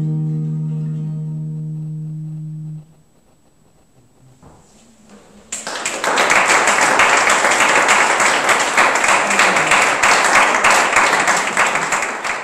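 The song's final chord rings out on guitars and is damped about three seconds in. After a short near-silent pause, the audience breaks into applause from about five and a half seconds in.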